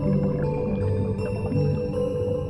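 Slow, calm piano music with long held notes, steady in level.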